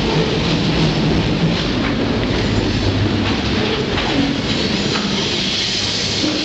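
Freight train rolling along, heard from aboard: a steady rumble of wheels on rail with a few faint clicks from the track.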